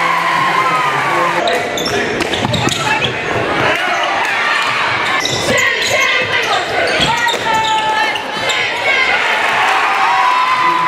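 Live high school basketball game sounds in a large gym: the ball bouncing on the hardwood court amid crowd voices and shouts, echoing in the hall.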